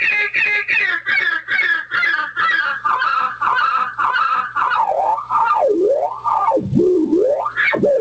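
Guitar delay pedal with its feedback turned up into self-oscillation: a pitched echo repeating about four times a second that slows and drops in pitch as the delay time is lengthened. From about halfway it breaks into wide swooping pitch sweeps, down to a low growl and back up to a high wail.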